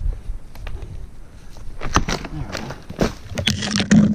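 A dirt bike being kick-started: sharp knocks about a second apart from the kick-starter, then a louder burst near the end as the engine begins to fire.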